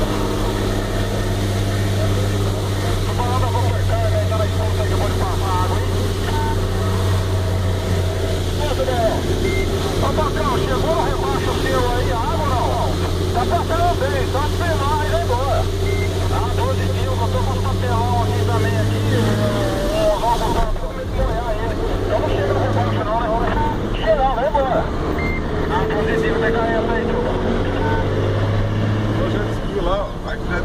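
Truck engine running at a steady low hum, with indistinct voices over it. The hum drops away about two-thirds of the way through and returns near the end.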